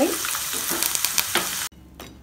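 Curry leaves deep-frying in hot oil: a steady sizzle with many small crackles and pops. It cuts off suddenly near the end.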